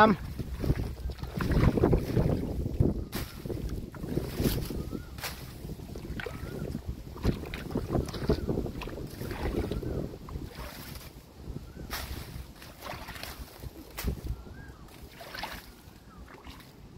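A hand sloshing and splashing in a shallow muddy water hole, with dry reeds crackling and rustling and wind buffeting the microphone.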